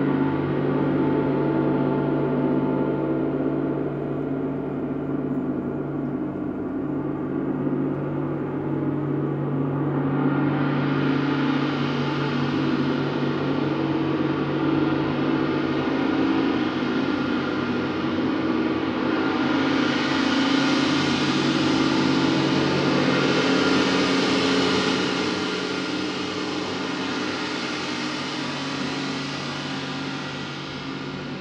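Several large suspended gongs sounding together in a continuous, layered wash of long sustained tones. A bright, shimmering upper layer swells in about a third of the way through, grows strongest past the middle, then eases off near the end.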